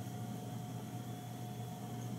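Quiet steady room tone: a low hum with a faint thin whine over an even hiss, with no distinct knocks or clicks.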